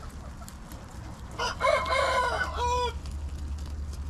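A rooster crowing once, a call about a second and a half long starting about a second and a half in, over a steady low hum.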